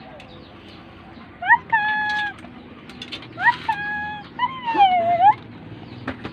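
Puppy whining: three high, drawn-out whines, each rising quickly and then holding steady. The last one bends down and back up.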